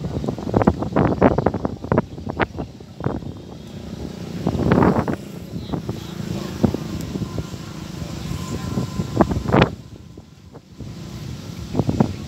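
Irregular knocks and thuds of wooden crates being handed along and set down on a steel barge deck: a quick run of them in the first few seconds, a louder cluster about five seconds in and a single sharp knock near the end, over steady background noise.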